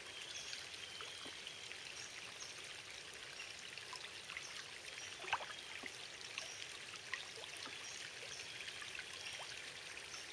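Water trickling and dripping with small splashes as a canoe paddle is stroked through calm water, one splash about five seconds in louder than the rest. Faint high chirps sound in the background.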